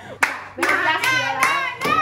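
Rhythmic hand clapping, about two to three claps a second, with excited voices shouting along.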